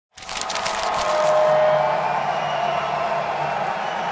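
Intro sting under an animated title card: a loud, rushing noise that cuts in abruptly, with a held tone through the middle, easing off slightly toward the end.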